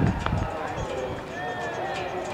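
Birds chirping with many short whistled calls, over a low rumble near the start and a single sharp knock about a quarter of a second in.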